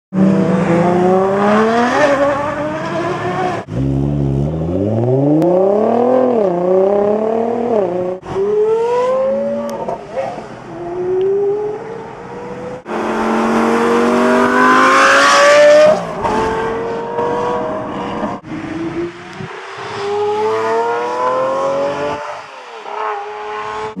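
High-performance sports car engines accelerating hard in a run of short clips joined by abrupt cuts, about five cars in turn, each a climbing engine pitch broken by gear changes. The first is a Ferrari 599 GTO's V12 pulling away. The loudest pass comes about fifteen seconds in.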